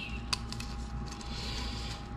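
Faint handling noise of gloved hands working a rubber O-ring on a plastic oil filter housing cap, with one light click about a third of a second in. A faint steady hum runs underneath.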